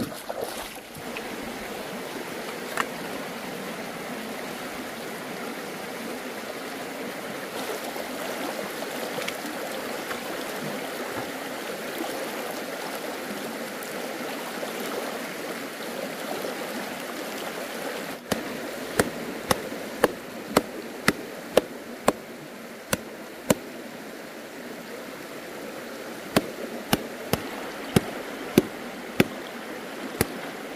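Stream water running steadily over rocks. From about two-thirds of the way in, a knife chops a heap of river algae on a hard surface in sharp, regular strikes about two a second, with a short pause partway.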